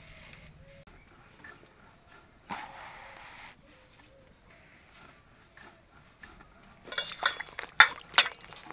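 Whole eggplants being slit lengthwise on a boti blade: a soft slicing scrape about two and a half seconds in, then a cluster of sharp clicks and knocks near the end, the loudest sounds here.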